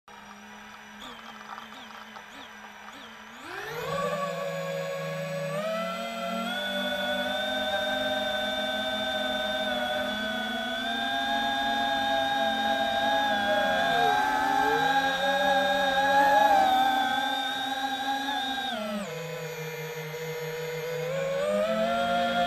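FPV quadcopter's electric motors and propellers whining in several close tones: they spool up suddenly about three and a half seconds in, then shift pitch in steps with the throttle, with a brief deep dip and recovery in the middle and a drop in pitch near the end.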